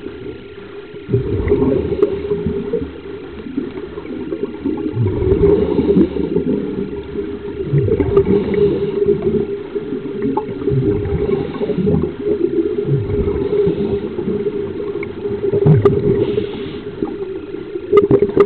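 Scuba diver's regulator breathing recorded underwater through a camera housing: rumbling, gurgling bursts of exhaled bubbles and a faint hiss of inhalation every few seconds, over a steady low hum.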